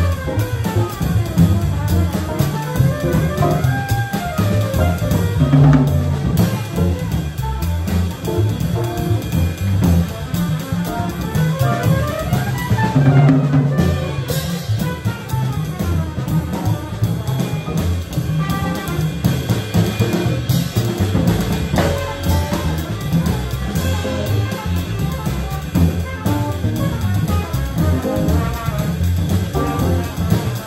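Live small-band jazz: drum kit, electric keyboard, upright bass and trumpet playing together, with fast melodic runs that rise and fall over a driving rhythm.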